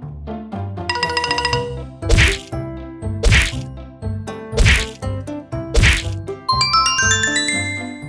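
Bright, bouncy children's background music. Over it come four sharp whack-like hits a little over a second apart, and near the end a quick rising run of chime notes.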